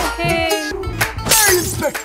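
Film trailer soundtrack: music with a short, loud noisy crash about one and a half seconds in.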